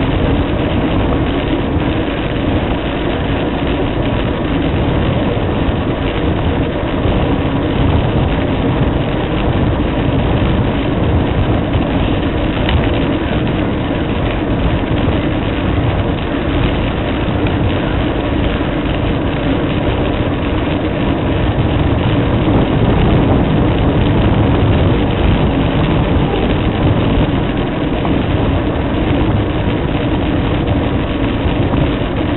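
Steady, loud wind and rolling noise picked up by a camera mounted on a fixed-gear bicycle riding along a paved path, with a faint steady hum underneath.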